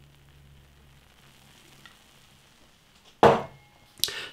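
Faint fizzing of the foamy head of a highly carbonated Belgian blonde ale as it is poured from the bottle into a glass, with a short loud sound about three seconds in.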